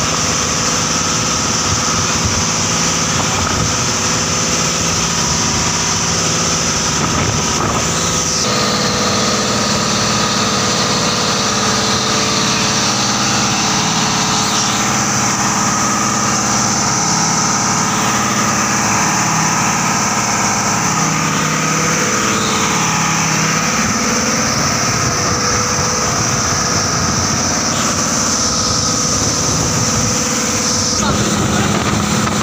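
Engine of a motorized outrigger boat (bangka) running steadily under way, with the rush of wind and water around the hull. The engine note shifts slightly about eight seconds in.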